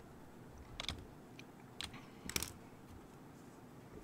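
A few faint, scattered clicks of a computer keyboard and mouse, about four or five over a couple of seconds.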